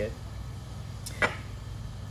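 One short, sharp click about a second in: a stainless steel espresso portafilter basket set down on a wooden bench, over a low steady hum.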